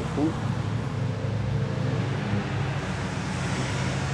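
Steady low rumble of city street traffic, without breaks or changes.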